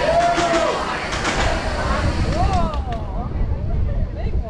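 Roller coaster train rolling out of the station and picking up speed: a low rumble of the train on the track builds from about halfway, with wind on the microphone. Riders' whoops and cheers rise and fall over it, and a few sharp clicks come in the first second or so.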